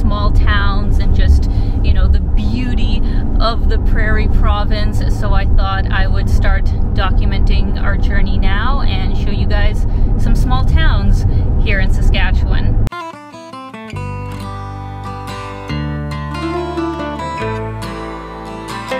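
Steady low road and engine rumble inside a moving car's cabin, under a woman talking. It cuts off abruptly about thirteen seconds in, replaced by light plucked acoustic-guitar music.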